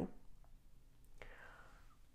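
A faint, short breath drawn in by the reader a little over a second in, over quiet room tone.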